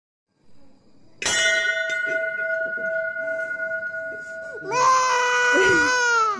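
A steady ringing tone comes in a little over a second in and holds for about three and a half seconds, then an infant starts crying loudly near the end, a high wailing cry.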